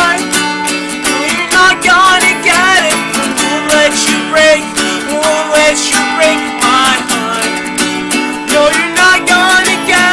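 Acoustic guitar strummed in a steady rhythm, with a man's voice singing wordless melodic lines over it.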